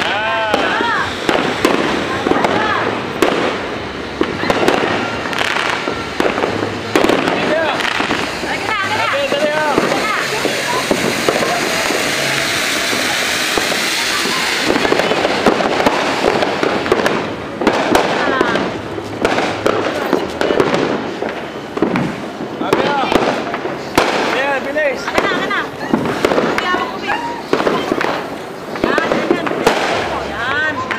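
Ground fountain fireworks spraying sparks, with a steady hiss that is strongest in the middle stretch. Many sharp firecracker pops and cracks go off throughout.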